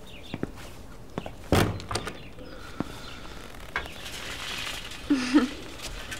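Wooden panelled door being handled: light clicks, then one solid thunk about a second and a half in, like the door shutting against its frame, followed by a few softer knocks. A short low sound comes near the end.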